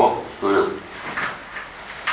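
A person's voice in two short spoken phrases, the second about half a second in, with quieter stretches between them.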